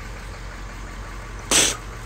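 A man spraying out a mouthful of drink in a spit-take: one short, loud, spluttering burst about a second and a half in. Under it, a low steady engine idle.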